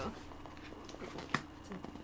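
Faint handling noises in a quiet room: a few small clicks and taps, with one sharper click a little past the middle.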